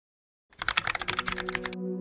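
Keyboard typing sound effect: a quick run of key clicks lasting just over a second, starting about half a second in. Soft ambient music with held tones comes in underneath.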